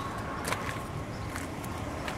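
Quiet outdoor background noise with a faint steady hum and a few light clicks.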